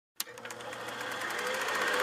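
A click, then a mechanical clatter whose clicks quicken and grow steadily louder, like a small machine running up to speed.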